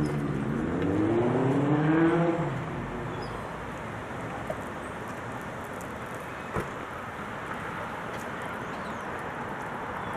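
A motor vehicle accelerating, its engine pitch rising over the first two and a half seconds and then fading into steady background noise.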